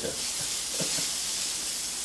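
Pieces of cod sizzling steadily in hot oil in a frying pan as they are seared and turned with tongs.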